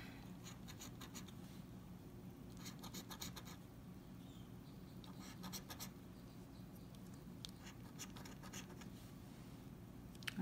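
A coin scratching the coating off a paper scratch-off lottery ticket: faint scraping strokes in short runs with pauses between them, stopping just before the end.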